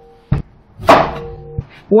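A cleaver chopping through a white radish onto a wooden cutting board, three strokes: a dull thud, a sharper, louder chop just under a second in, and a lighter knock near the end.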